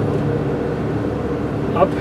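Car driving along, heard from inside the cabin: a steady hum of engine and tyre noise.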